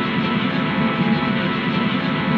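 Guitar amplifier driven through effects pedals, putting out a steady wall of distorted noise with held, droning tones and no beat or breaks.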